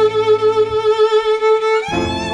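Tango ensemble recording: a violin holds one long note with vibrato while the accompaniment drops away beneath it, and the fuller ensemble comes back in near the end.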